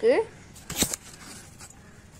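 The tail of a spoken word, then a single brief rustle with a sharp click a little under a second in: handling noise as a hand touches the fig plant.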